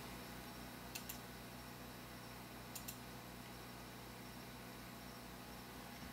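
Two pairs of faint computer mouse clicks, about a second in and again near three seconds, over a low steady hum.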